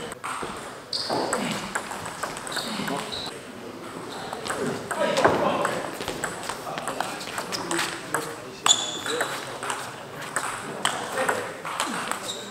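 Table tennis ball struck back and forth in a rally: quick sharp clicks of the ball on the rubber bats and the table. Voices chatter in the background.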